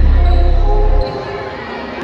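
A basketball being dribbled on a hardwood gym floor, with voices in the hall. A deep low rumble stops about a second in.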